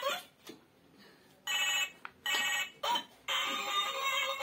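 Toy telephone giving short electronic ringing bursts, then a continuous electronic tune starting a little past three seconds in.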